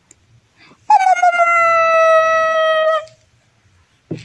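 Baby's long high-pitched vocal squeal, held about two seconds with its pitch sliding slightly down, starting about a second in.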